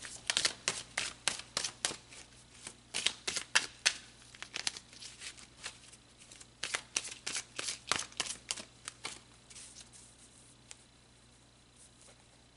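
Rider tarot deck being shuffled by hand: three runs of quick card snaps in the first nine seconds, thinning to a few ticks and then quiet near the end.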